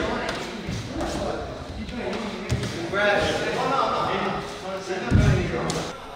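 Sparring in a large hall: gloved punches and kicks landing with dull thuds, the strongest about five seconds in, with bare feet on the wooden floor and voices of onlookers in the background.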